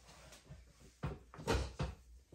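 Three soft knocks with low thuds, a little over a second in and closely spaced, after a faint stretch.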